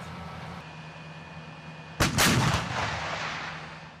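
An M109A6 Paladin's 155mm howitzer fires one round about halfway through, a sudden loud blast whose report rolls away over the next two seconds. Before the shot, a vehicle engine runs steadily.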